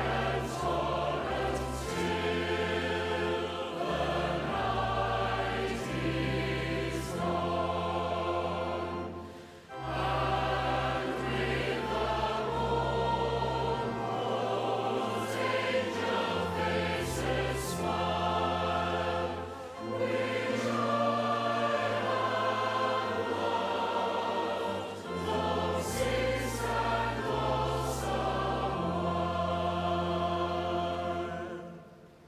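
Large choir singing with orchestral accompaniment of strings and low bass notes. There is a short break between phrases about nine seconds in.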